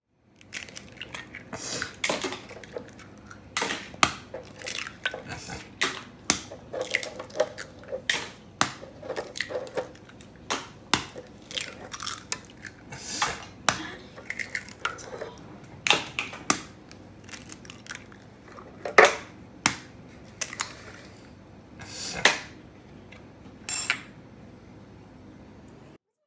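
Eggs being cracked one after another into a ceramic dish: a long run of sharp shell cracks and crunching as shells are broken open, with the loudest knocks near the end.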